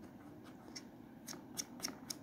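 A few faint, sharp plastic clicks, about four in the second half, from hands handling the parts of a Bissell CleanView OnePass upright vacuum, which is switched off.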